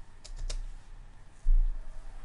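A few light computer keyboard and mouse clicks in quick succession about half a second in, then a short low thump about a second and a half in.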